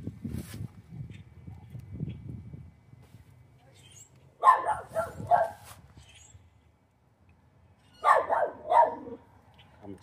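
A dog barking in two short volleys of about three barks each, the first about four and a half seconds in and the second near eight seconds.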